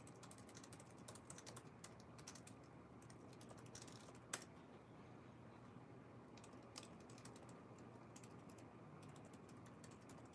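Faint typing on a keyboard: quick runs of key clicks with one louder click about four seconds in and a thinner stretch in the middle.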